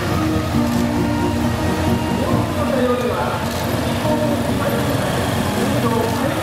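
Music with sustained held notes plays over the low, steady running of police motorcycles and patrol cars passing slowly.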